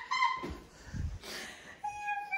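Bengal cat meowing: a high call ends just after the start, and another starts near the end and falls in pitch. Two soft thumps come in between.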